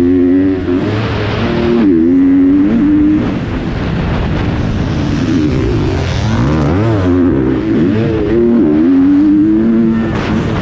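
GasGas 250 motocross bike's engine revving hard, its pitch climbing and dropping again and again as the rider opens and closes the throttle through the corners and straights of a dirt track.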